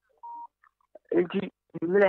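A single short electronic beep, one steady tone lasting about a quarter of a second, followed about a second in by a person speaking.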